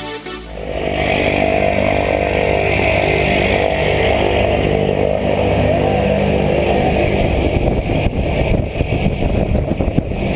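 Engine and propeller of a single-engine skydiving plane running steadily on the ground, heard as a loud, dense, even noise close to the camera. From about eight seconds in it turns choppier, with uneven buffeting.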